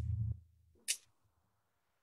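Mostly silence in a hesitation pause: at the start the low, closed-mouth tail of a drawn-out "um", then a single short hiss about a second in.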